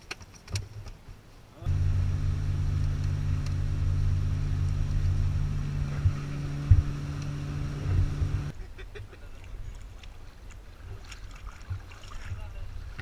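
A boat engine running steadily, a low even hum that starts abruptly a couple of seconds in and cuts off abruptly after about seven seconds. Around it, faint scattered knocks and rustling.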